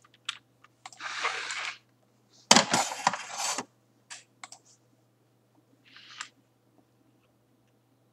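Scattered clicks and taps with a few short rustling scrapes, as of a computer keyboard and mouse being handled while checking a message. The loudest sound is a knock with a scrape about two and a half seconds in; it goes quiet in the last second or so.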